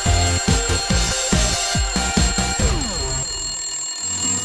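Upbeat TV intro jingle with a steady beat and a ringing alarm-clock bell sound, ending in a falling pitch sweep near the end.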